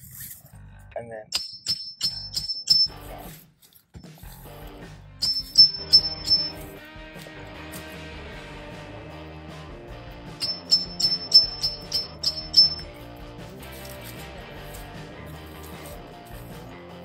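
Hand chisel being struck in quick runs of five or six sharp, ringing metal clinks, three runs in all, as it is driven in to cut a sucker off at the tree's base. Background music with guitar comes in about four seconds in and runs under the later strikes.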